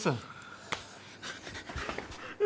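A short spoken 'sir' at the start, then a mostly quiet room with faint rustling and breathing, broken by one sharp click about three quarters of a second in and a few softer ticks near the end.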